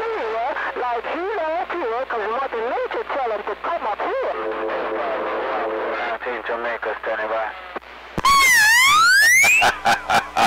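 A distant station's voice coming in garbled over a CB radio receiver. About eight seconds in, a loud electronic sweep tone dips and then rises sharply in pitch for about a second and a half.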